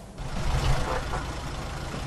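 Black hackney cab's engine idling, a steady low rumble.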